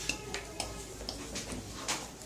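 Light clicks and taps of small cups and plastic spoons being picked up and handled over a metal serving tray: a handful of scattered small knocks, the sharpest one near the end.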